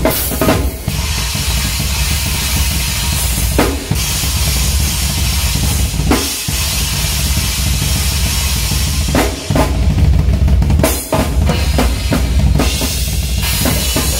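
Tama drum kit with Paiste cymbals played in a live metal drum solo: a dense, continuous bass drum underneath rapid snare and tom strokes and a constant cymbal wash. There are short breaks in the pattern about six, nine and a half, and eleven seconds in.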